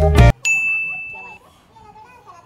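Background music cuts off abruptly just after the start. Then a single high, bell-like ding sounds about half a second in and rings for about a second as it fades.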